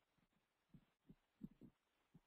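Near silence, broken by a few faint, short low thumps in the second half.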